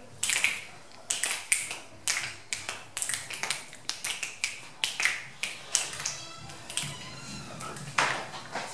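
A steady run of sharp clicks, roughly two a second, with some weaker ones in between, in a small hard-surfaced room.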